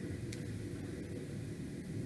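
Steady low background rumble of room noise, with one faint click about a third of a second in.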